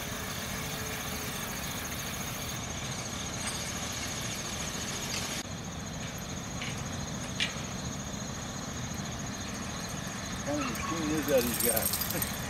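Insects trilling in a continuous, high, pulsing tone over a low steady rumble, with a faint voice near the end.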